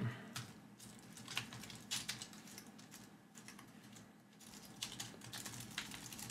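Computer keyboard being typed on: scattered faint keystrokes, then a quicker run of keys near the end.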